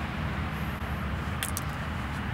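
Steady low rumble of outdoor background noise, with a few faint clicks about one and a half seconds in.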